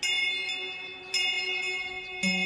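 A bell struck twice, about a second apart, each stroke ringing on with several overlapping tones that slowly fade.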